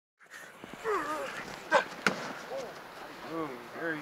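Football players shouting short calls, with two sharp knocks close together about two seconds in.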